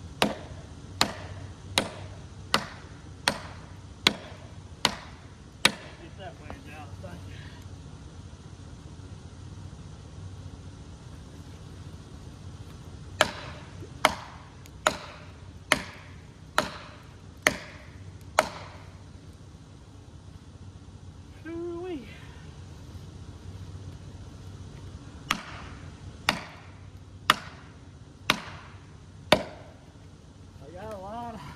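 Steady hammer blows driving felling wedges into the cut of a leaning poplar: three sets of sharp strikes, about eight, then seven, then five, roughly one every 0.8 s. A farm tractor's engine idles underneath as it pushes against the tree.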